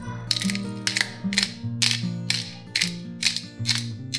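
Disposable pepper mill with a plastic grinding cap being twisted to grind black peppercorns, giving a series of short ratcheting, gritty grinding bursts about two to three a second.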